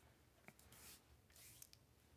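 Near silence: room tone with a faint click and a couple of brief, faint hisses.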